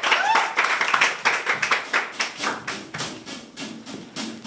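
Scattered hand claps from a small audience, thinning out, with a brief whoop at the start. Low musical notes come in about halfway through.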